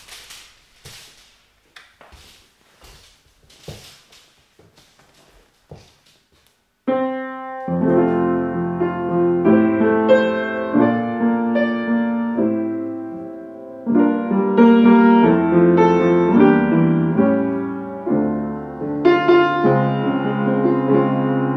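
A few faint clicks, then about seven seconds in a Yamaha U30 upright acoustic piano starts being played by hand: loud chords and notes held with the sustain pedal.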